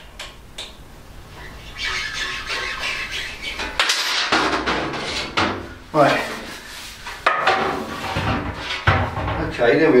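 Hand-formed sheet-aluminium motorcycle belly pan being taken off and handled, rattling and scraping, with sharp knocks about six and nine seconds in as it is set on the workbench.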